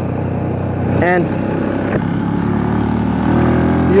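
Engine of a carbureted Rusi Classic 250 motorcycle running steadily under way, its note rising a little near the end as the bike speeds up.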